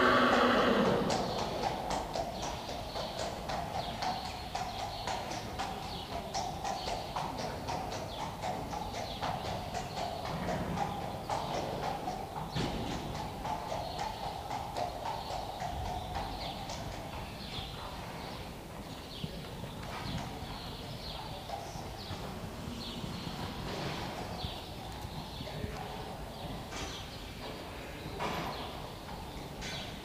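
Friesian horse's hooves beating in a steady rhythm on the sand footing of an indoor arena as it is ridden. A loud whinny comes right at the start.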